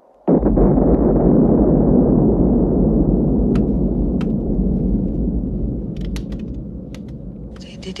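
A sudden deep, rumbling boom that slowly dies away over several seconds, followed by a few faint clicks and crackles.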